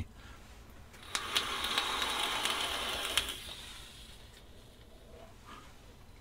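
Rebuildable dripping tank atomiser (Limitless RDTA) fired at 80 watts: about two seconds of airy hiss as air is drawn through it, with the coil crackling and sizzling as it vaporises e-liquid, then a softer hiss trailing off.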